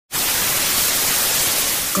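Television static: a steady hiss of white noise from a snowy CRT screen, starting abruptly.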